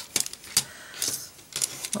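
Plastic casing of a tape runner being handled after being opened for a refill: a scattering of small, sharp plastic clicks and light rattles.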